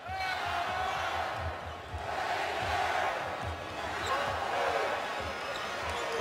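Basketball dribbled on a hardwood court, about two bounces a second, over steady arena crowd noise.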